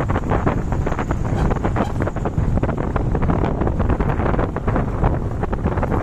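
Wind buffeting the microphone of a moving motorcycle: a loud, steady rush with constant rapid gusting crackles.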